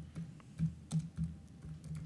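Computer keyboard being typed on: a quick, uneven run of about ten key clicks as a word is entered.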